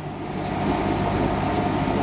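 Aquarium filtration running: a steady, even rush of water and air noise.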